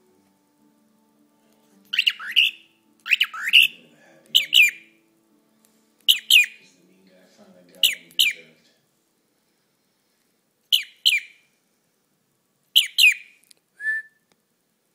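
A young pet cockatiel giving loud, sharp chirps in quick pairs, about seven pairs with pauses between, each note falling in pitch. The paired chirps are the bird's attempt at saying its own name, "Jim, Jim".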